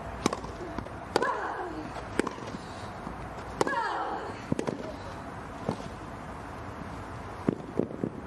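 Tennis rally: sharp racket-on-ball hits roughly a second apart, starting with a serve. Two of the hits, about one and three and a half seconds in, come with a player's short vocal grunt.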